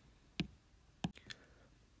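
A few faint, sharp clicks: one about half a second in, then a quick cluster of three around a second in.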